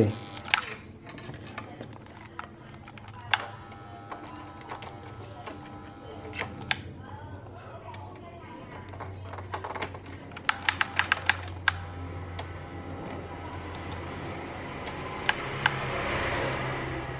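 Light clicks and taps of hands handling a circuit board and fitting a component for soldering. A quick run of about eight clicks comes around ten to eleven seconds in, over a steady low hum.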